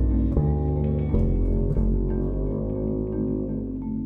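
Electro-acoustic chamber ensemble playing an instrumental passage: double bass sounding deep notes that change about once a second, under guitar and sustained higher instrument tones.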